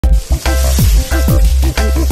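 Sliced red onions sizzling as they fry in a pan and are stirred with a wooden spatula, under music with a deep, repeating bass beat that is the loudest sound.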